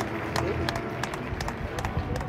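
Sparse hand clapping from a few people, sharp single claps a few times a second at an uneven pace, with indistinct voices behind.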